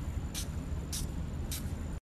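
Low rumble of wind on a phone microphone, with three short soft hisses about half a second apart.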